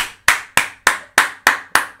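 A man clapping his hands: seven quick, even claps, about three and a half a second.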